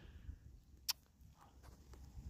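Quiet outdoor background with a faint low rumble, broken by one short, sharp click a little under a second in.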